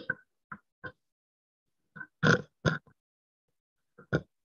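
A handheld microphone being carried and handled: a string of short, choppy bumps and clipped sound fragments, cut apart by dead silence as the conference-call audio gates out between them.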